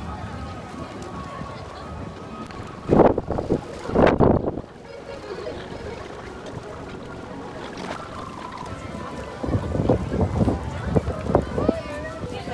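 Busy theme-park walkway ambience: a crowd of guests talking over faint background music. Louder voices close by come through about three and four seconds in and again near the end.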